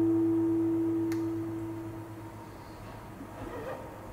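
The last note of a classical guitar ringing out and dying away over about two seconds at the end of the tune, with a single click about a second in. A steady low hum sits beneath, and faint room noise follows.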